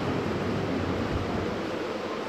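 Steady hiss of room noise with a faint low rumble during a pause in speech.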